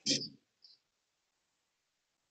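A short laugh from a person in the first half second, followed by a faint breath-like hiss and then silence.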